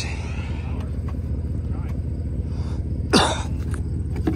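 A man clears his throat once, loudly, about three seconds in, over a steady low background rumble.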